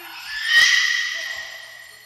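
A bright metallic crash, like a cymbal, swells for about half a second and then rings out, fading over the next second and a half, with a low thud at its peak. It is part of a deep house recording.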